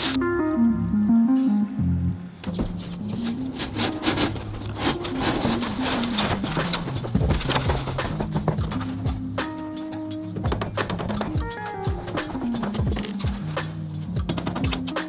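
Instrumental background music with a stepping bass-and-melody line and a quick percussive beat.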